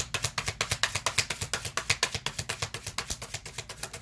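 A deck of tarot cards being shuffled by hand: a fast, even run of card flicks, about nine a second, stopping just before the end.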